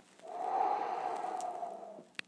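A man's long, airy audible breath, without voice, lasting about a second and a half.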